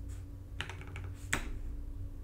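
A few computer keyboard key presses, a short cluster about half a second in and another single press about three-quarters of a second later, over a faint steady low hum.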